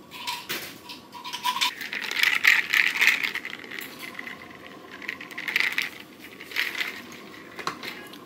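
Ice cubes rattling and clinking inside a plastic straw water bottle as it is handled and shaken. There are bursts of clinking through the middle and a sharp knock near the end as the bottle is set down on a plastic high-chair tray.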